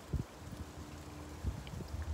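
Low rumble of wind on the microphone outdoors, with two soft thumps, one just after the start and one near the end.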